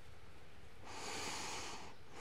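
A person's deep, audible breath through the nose, starting about halfway in and lasting about a second, while holding a standing forward fold.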